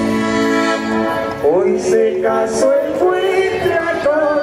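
Mexican regional dance music led by an accordion, with held chords and a short upward run about a second and a half in.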